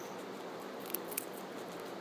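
A guinea pig biting and crunching a raw carrot: small crisp clicks throughout, with two sharper crunches about a second in.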